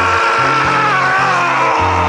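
A man singing one long, high note with a warble, slowly dropping in pitch, over a backing track with a bass line.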